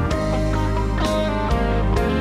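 Live band music, a guitar line leading over a steady bass and drums, with cymbal or drum hits about once a second.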